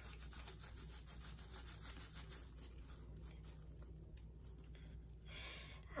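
Wooden craft stick stirring and scraping inside a small plastic cup, mixing pigment powder into pouring medium to disperse it: a faint, fast, continuous rubbing scrape.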